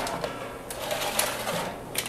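Light clanks and clicks of a metal baking sheet of freshly baked bacon being handled and shifted on the stovetop, a few separate knocks over a faint hiss.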